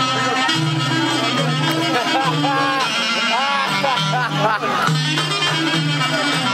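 Greek folk dance music from Epirus playing steadily for the dancers: a melody line with sliding, curling ornaments over a steady stepping bass line.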